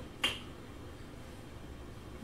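A single short, sharp click about a quarter second in, followed by faint, steady room tone.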